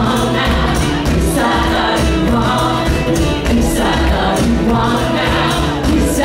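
Live band music: a woman singing lead over a strummed acoustic guitar, joined by backing voices, with a drum kit and bass underneath.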